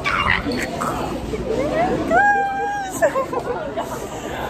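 Voices and background chatter of a crowded room, with one voice sliding up into a long high held note about two seconds in.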